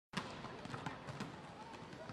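Faint ambience of a large sports hall: a murmur of crowd voices with scattered sharp thumps of volleyballs being hit and bouncing on the court during warm-up.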